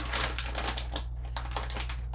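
Plastic snack bag of bagel chips crinkling as it is handled and turned over in the hands: a rapid, irregular crackle.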